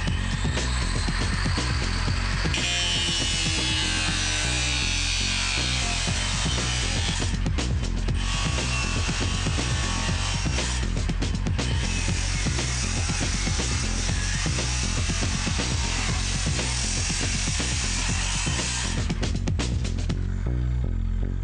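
A power tool cutting steadily, with a few brief breaks, over background music with a steady beat; it is likely cutting into a front-loading washing machine to open it up.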